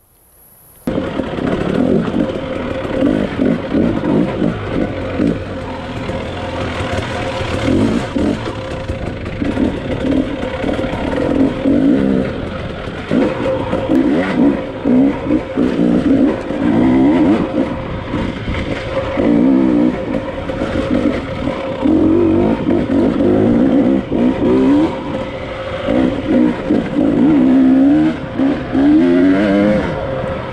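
KTM 300 XC-W two-stroke single-cylinder dirt bike engine, with an FMF exhaust, revving up and down again and again while ridden on a rocky trail, starting about a second in.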